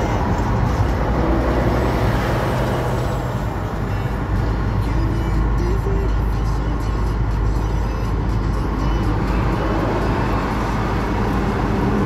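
Steady engine and road rumble of a moving car, heard from inside its cabin.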